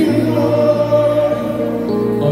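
Live highlife band music with several voices singing together, notes held steadily.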